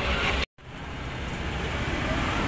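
Steady low rumble and hiss of background noise with no clear events. It drops out completely for a moment about half a second in, at an edit cut, then fades back in and slowly grows louder.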